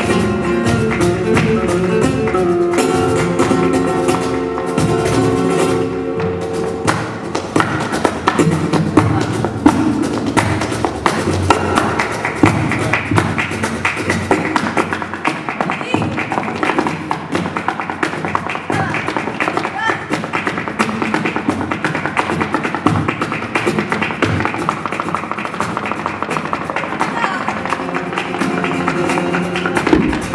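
Live flamenco music with guitar: held notes for the first seven seconds or so, then fast, dense percussive tapping from a flamenco dancer's footwork (zapateado) on the stage floor over the music.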